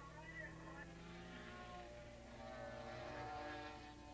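Engines of several racing motorcycles heard faintly from a distance, a few pitches overlapping and slowly rising and falling, swelling slightly about three seconds in.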